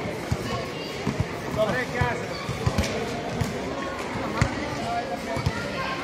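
Basketball being dribbled and bounced on a concrete court, a series of irregular thuds, with players and onlookers calling out over them.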